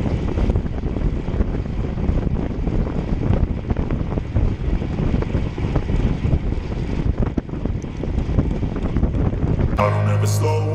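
Wind rushing and buffeting over an action camera's microphone on a road bicycle riding at speed, a steady rumbling noise that rises and falls irregularly.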